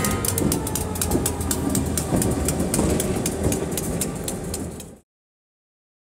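Diesel locomotive rolling close by, its wheels making a run of sharp clicks on the rails over a low engine rumble. The sound cuts off abruptly about five seconds in.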